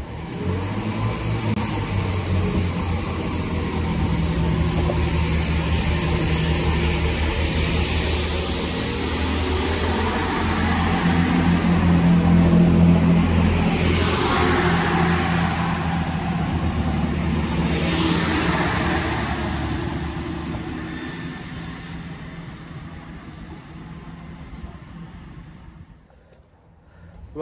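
Great Western Railway Class 165 diesel multiple unit pulling away from the platform, its underfloor diesel engines working under load. The engine sound builds to its loudest about halfway through, then fades as the train draws away.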